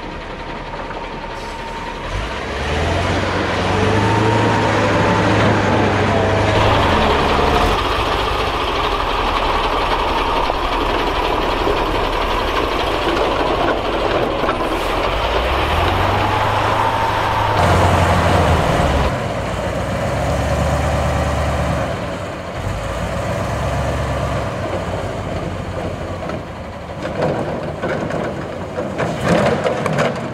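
Diesel engine of a MAN 10t gl 8x8 military truck working under load as it crawls over a wave track. The engine note climbs and holds twice as it pulls over the humps, with irregular knocks from the truck near the end.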